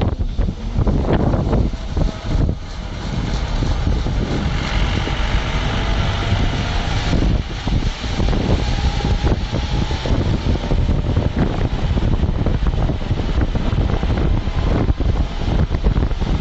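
Vehicle running along a road, heard from inside: a steady low rumble of engine and road noise with wind buffeting the microphone in irregular gusts.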